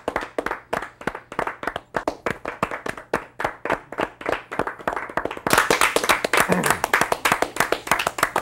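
A small group of people clapping their hands, uneven separate claps that swell into fuller, louder applause about five and a half seconds in.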